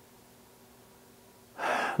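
A quiet room with a faint steady hum, then about a second and a half in, a person's sharp intake of breath, a gasp, just before speaking.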